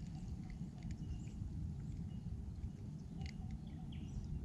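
Quiet lakeside ambience: a steady low rumble of wind on the microphone, with a few faint, short high chirps from distant birds.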